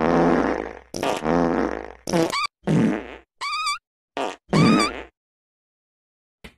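A string of about seven loud farts from a pit bull. The first two are long and low, and the later ones are shorter and squeakier, with a pitch that wavers up and down.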